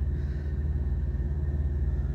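Idling diesel truck engine: a steady low rumble with a fast, even pulse, muffled as heard from inside the truck's cab.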